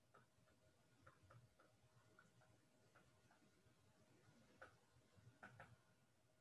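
Near silence with faint, irregular ticks of a stylus tapping on a tablet's glass screen while handwriting, a few a little louder near the end, over a faint steady hum.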